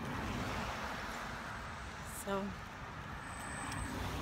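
Steady outdoor background noise: a low rumble and hiss, a little louder in the first couple of seconds, with a single spoken word about halfway through.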